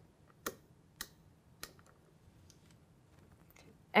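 Siemens SIRIUS ACT ID key-operated switch clicking through its detent positions as the key is turned toward position 4: three sharp clicks about half a second apart, then a few fainter ticks.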